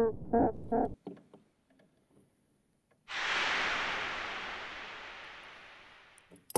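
A person laughing in three short bursts, the loudest sound here. About three seconds in, a sudden hiss starts and fades away slowly.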